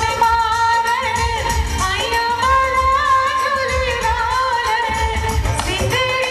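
A woman singing a Bollywood-style song into a microphone over recorded backing music, holding long, wavering notes above a steady low beat.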